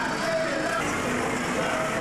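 Steady noise of a passing carnival procession: a float lorry's engine running under a crowd's chatter.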